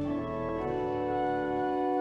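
Pipe organ music: slow chords of long held notes, moving to new notes about every second.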